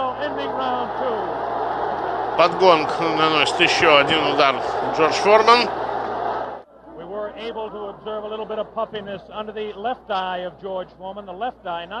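A man speaking commentary over steady crowd noise; the crowd noise cuts off suddenly about six and a half seconds in, and the voice carries on over a much quieter background.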